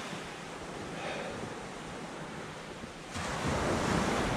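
Small waves breaking and washing on a shingle beach, with wind on the microphone; the sound gets suddenly louder about three seconds in.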